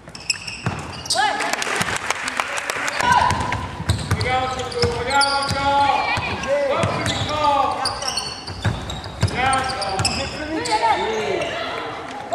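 Basketball game in progress: a ball bouncing repeatedly on the hardwood court, with players shouting short calls to one another throughout.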